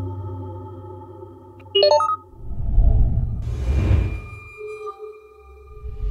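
Electronic sound-design soundtrack: a ringing sonar-like ping dying away, a short bright chime about two seconds in, then a low swelling whoosh and a few quiet held tones near the end.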